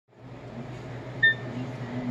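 A cockatoo's beak tapping a small brass bell once, about a second in, giving a short bright ring over a steady low hum.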